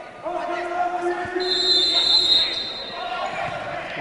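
Referee's whistle blown once for about a second and a half, signalling a futsal free kick, over a long held shout from spectators in a sports hall. A single ball thud comes about a second in.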